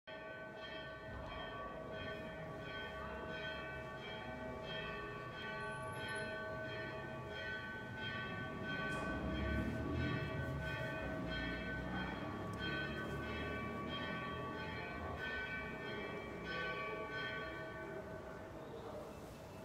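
Church bells ringing, struck about twice a second, their tones ringing on between strikes. A low rumble swells and fades around the middle.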